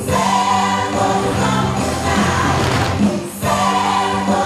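Choir music with long held notes, with a brief break a little over three seconds in.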